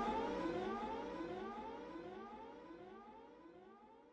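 Siren-like electronic tone in a hip-hop track's outro, a rising glide repeating about three times a second and fading out to near silence.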